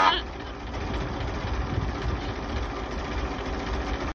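A horn blast from a 1915 Overland cuts off about a fifth of a second in, leaving the car's engine idling with a steady low rumble.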